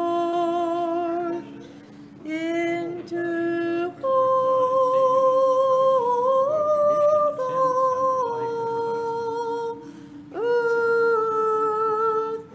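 Orthodox liturgical chant: one voice sings a slow hymn in long held notes, stepping between pitches, over a steady lower held drone, with short breaths between phrases about two seconds in and near ten seconds.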